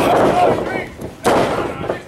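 A single loud bang about a second in, as a wrestler is driven onto the wrestling ring's mat, with shouting voices around it.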